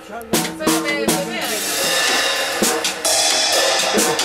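Acoustic drum kit being played: a few sharp drum hits in the first second and a half and another later, over a bed of music, with a denser, louder wash of sound from about three seconds in.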